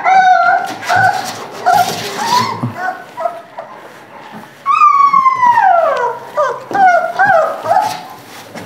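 Young Great Dane puppies whimpering and crying: a run of short high cries, then about five seconds in one long cry that falls in pitch, followed by a few more short cries near the end.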